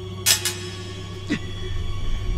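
Tense film-score drone with a steady low hum, broken by two sharp, bright hits close together near the start and a shorter hit with a falling tone a second later.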